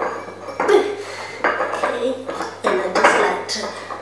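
Ceramic teacup clinking and scraping against its saucer as it is handled, in several separate knocks.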